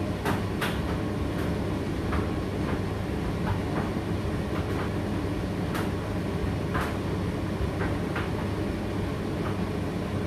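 Indesit IDC8T3 condenser tumble dryer running mid-cycle: a steady hum and rumble of the motor and turning drum, with irregular light clicks and knocks from the tumbling load, about one a second.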